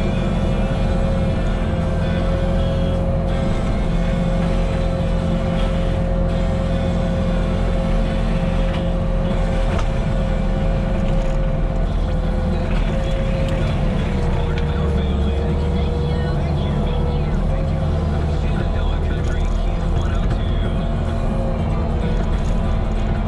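Skid steer diesel engine running hard with a Diamond disc mulcher's hydraulic drive and spinning disc giving a steady whine over a heavy rumble, heard from the cab. The whine sags a little in pitch for a few seconds past the middle as the disc works into a small tree's branches and then recovers.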